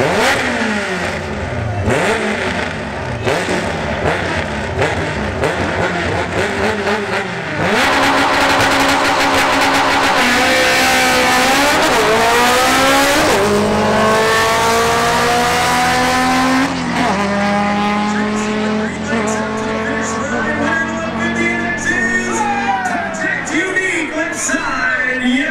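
Two drag cars, a Chevrolet Camaro and a Honda Civic, running at the starting line, then launching at full throttle about eight seconds in. Engine pitch climbs, drops at an upshift, and the sound falls off as the cars run away down the track.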